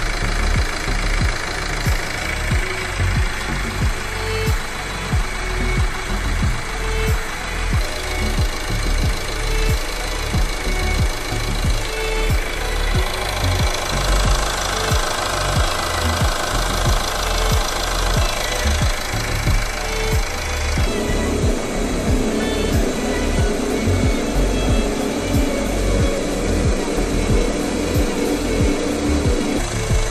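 Ford Tourneo Courier engine idling steadily with a new timing belt set fitted, under background music.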